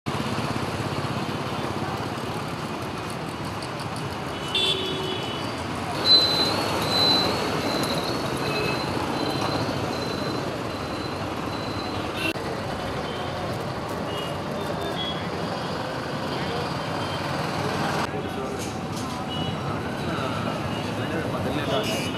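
Street traffic noise with vehicle horns: a short horn about four and a half seconds in, then a louder one about six seconds in, followed by a high beeping tone on and off for several seconds.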